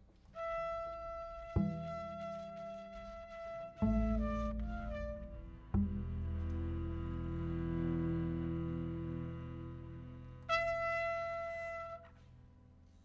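Free-improvised music: a cornet holding long high notes, with a short falling run near the middle, over low bowed and plucked strings from cello and double bass. Low string notes strike in sharply several times and then sustain, and the cornet's held tone returns near the end before the music drops away.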